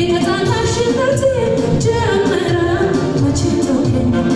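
Amharic gospel song (mezmur): a woman singing a melodic line over instrumental backing with a steady beat.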